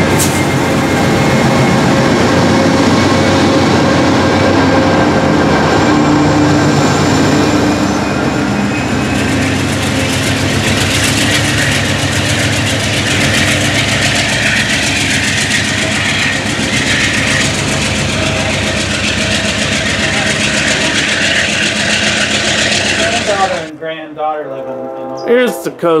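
Amtrak diesel locomotive running loud and steady at close range as the train moves along the platform, with rail and wheel noise. The sound cuts off suddenly near the end.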